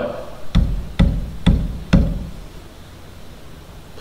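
Four knocks on a wooden pulpit, about half a second apart, acting out someone pounding on a door to be let in.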